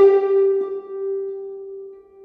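Sampled concert harp (VSL Synchron Harp, recorded from a Lyon & Healy Style 30 concert grand) played from a keyboard. One note is plucked repeatedly with rising force to step through the velocity layers, and its last and brightest pluck rings and fades away over about two seconds.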